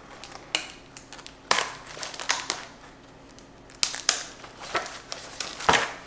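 Clear plastic packaging crinkling and plastic seed-starting tray parts being handled, in irregular crackles and clicks.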